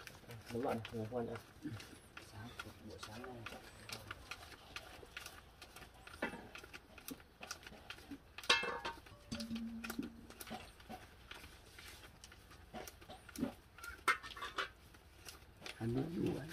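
Paper banknotes handled and flicked through one by one as they are counted, a soft scatter of faint clicks and rustles. Faint voices sound in the background, and an animal calls briefly about halfway through.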